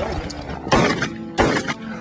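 Two shotgun shots about 0.7 s apart, fired at a flushed quail, both of them misses.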